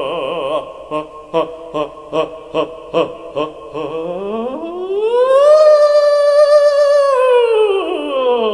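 A solo male operatic voice sings a cadenza. It holds a note with vibrato, then sings seven short detached notes, about two and a half a second. It then glides slowly up to a high note, holds it for about a second and a half, and slides back down near the end.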